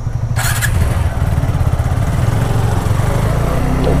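Motorcycle engine pulling away from a standstill and accelerating, with a steady low drone that grows a little louder as the bike gathers speed.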